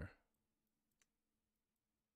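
Near silence with one faint click about a second in.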